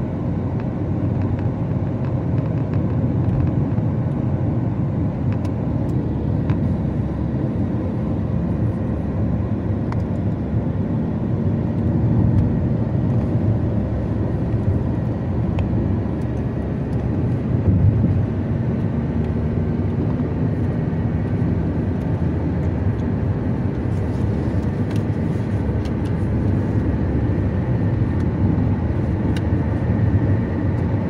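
Steady low rumble of a car driving at highway speed, heard from inside the cabin: tyre and engine noise with no change in pace.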